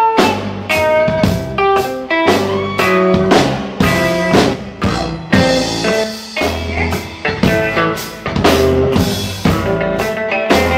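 Live band playing an instrumental passage: a drum kit keeps a steady beat under double bass and plucked guitar-family strings.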